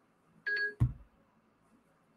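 A short electronic beep about half a second in, a single steady tone lasting about a quarter of a second. A sharp low thump follows right after it and is the loudest sound.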